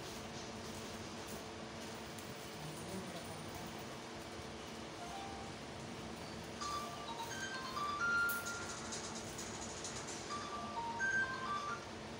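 A simple electronic tune of short beeping notes stepping up and down in pitch, starting about halfway through and lasting about five seconds, over a steady low hum.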